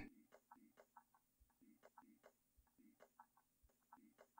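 Near silence: faint room tone with a low hum and scattered faint ticks.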